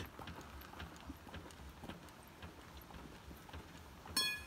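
Faint, irregular light knocks and taps of a steel pry bar worked against a seized rear wheel and brake drum, to knock the stuck brakes loose.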